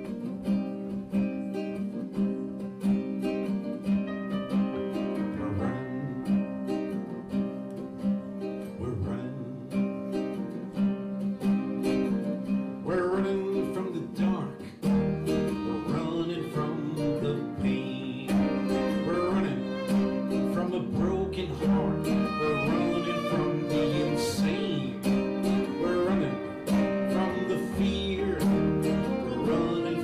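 Acoustic guitar and keyboard playing a song together, with a violin joining in about twelve seconds in and playing on to the end.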